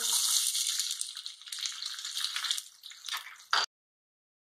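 Sliced onions sizzling sharply as they drop into hot oil with cumin seeds, then dying down to a lighter frying hiss. The sound cuts off suddenly near the end.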